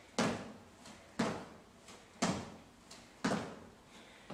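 Sneakers landing on a hardwood floor during jumping split squats: four landings about a second apart, each sharp and dying away quickly in the room.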